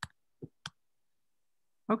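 Three short clicks of laptop keyboard keys, finishing a typed spreadsheet formula and entering it, within the first second.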